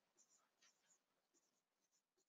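Near silence, with a few very faint short ticks.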